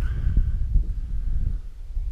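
Wind buffeting the camera microphone: a steady low rumble, with a faint thin high tone in the first second and a half.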